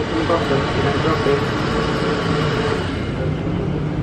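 Steady background din with faint, indistinct voices mixed in.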